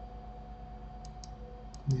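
Four quick clicks of a computer mouse button in the second half, in two pairs, over a faint steady electrical hum.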